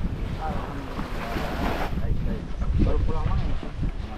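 Wind buffeting the microphone over small waves washing onto a sandy shore, the wash swelling about a second in and easing off near the two-second mark; faint voices come through now and then.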